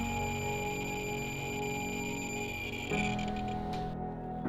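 Soft background music with held chords, over a steady high-pitched tone from a Thermo Scientific RadEye B20 survey meter sounding its count rate of about 15,000 counts per minute, the sign of the uranium glaze on a Bauer teapot. The tone cuts off near the end.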